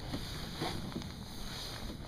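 Steady open-air background noise with a low rumble, and faint rustles and ticks as the body-worn camera moves.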